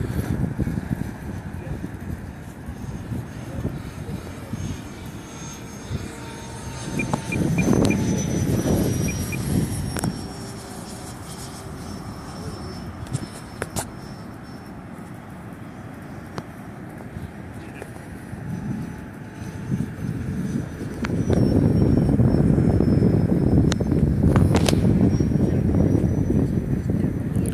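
Electric ducted fan of a 90 mm RC F-104 Starfighter jet running in flight, a thin high whine that falls slowly in pitch over a rushing noise. The rush swells louder twice, about a third of the way in and again near the end, as the jet passes close on its landing approach.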